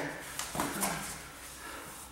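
Quiet scuffling of grapplers on foam mats: a few soft scuffs and a short low grunt in the first second.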